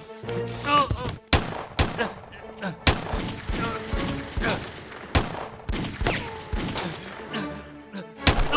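Gunfire in a film fight: a handgun fired again and again, about a dozen sharp shots at irregular spacing.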